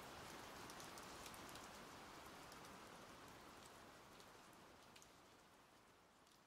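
Very faint rain sound, a soft hiss with scattered light ticks, slowly fading out as an ambient music track ends.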